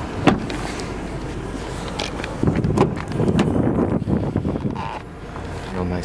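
Wind rumbling on the microphone, with handling noise, a sharp click shortly after the start and a few lighter knocks around two to three seconds in.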